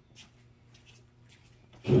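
Faint room tone with a steady low hum and a few faint ticks, then a man's voice near the end.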